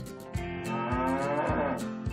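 A cow mooing once, one long call of about a second that falls in pitch at its end, over background music with a steady beat.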